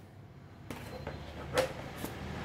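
Handling noise of EVA-foam armor pieces as metal washers are fitted onto protruding bolts, with one sharp click about one and a half seconds in.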